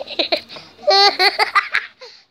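A child laughing in short, high-pitched repeated bursts, loudest about a second in.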